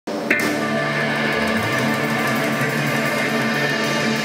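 Live rock band playing sustained electric guitar chords over drums, with a sharp hit that rings out just after the sound begins.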